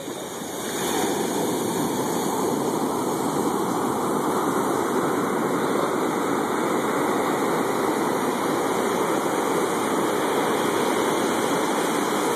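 Ocean surf breaking and washing up the sand: a steady rush of water that swells about a second in and then holds level.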